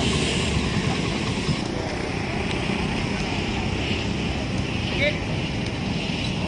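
Steady roadside traffic noise of vehicle engines, with indistinct voices in the background.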